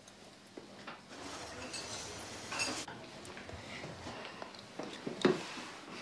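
Faint clinking of dishes and cutlery in a quiet room, with a few soft knocks.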